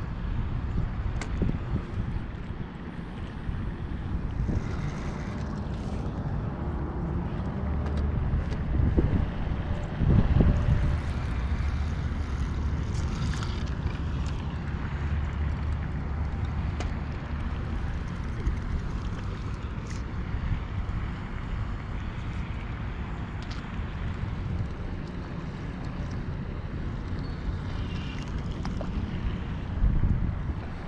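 Wind buffeting a body-worn microphone: a steady low rumble that swells about ten seconds in, with a few faint clicks and knocks scattered through it.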